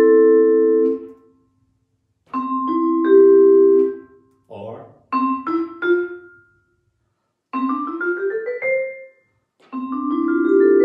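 Vibraphone struck with mallets, its metal bars ringing. The notes are left to sustain and then stopped dead by the damper pedal: a chord cut off about a second in, a held group stopped near the middle, a few short damped notes, and a quick rising run that ends abruptly near the end.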